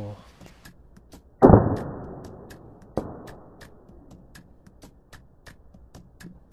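A toy foam-dart blaster being fired. There is a loud thump about a second and a half in that fades over about a second, then a shorter thump about three seconds in.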